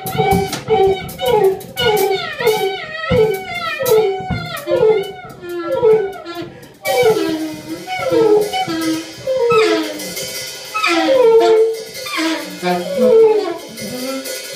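Daxophone in a free improvisation, sounding quick repeated voice-like notes that swoop downward in pitch, about two a second, with a drum kit played lightly underneath.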